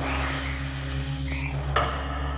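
Dark, droning background score with a low, pulsing throb over a steady hiss; a single sharp click comes near the end.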